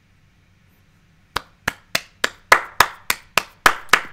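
One person clapping his hands in applause: a steady run of about ten sharp claps, roughly three a second, starting about a second and a half in.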